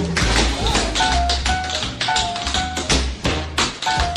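Jazz music with tap dancing: quick, sharp tap-shoe strikes in an uneven, busy rhythm over a bass line and short held melody notes.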